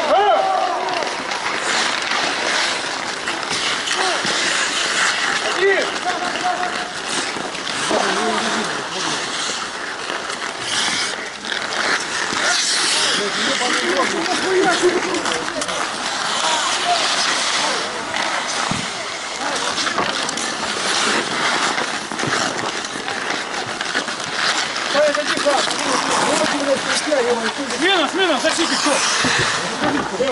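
Ice hockey play on an outdoor rink: skate blades scraping and carving the ice, with scattered clacks of sticks and puck, and players shouting.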